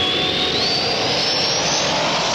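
Jet-like whoosh sound effect used as a transition stinger: a loud, steady rushing noise with a thin whistle rising steadily in pitch.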